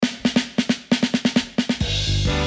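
Music track opening with a drum fill: a quick run of snare drum hits, after which bass and the rest of the band come in near the end.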